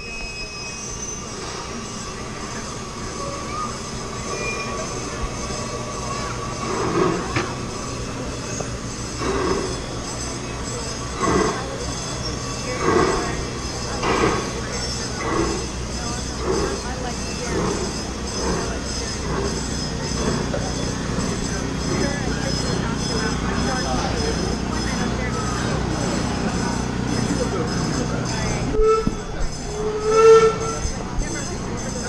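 Park steam locomotive pulling its train through a crossing: a run of exhaust chuffs about one every second and a bit, then the steady rumble of the passenger cars rolling past. A short pitched tone sounds near the end.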